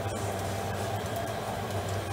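A steady low machine hum with a hiss over it, unchanging throughout.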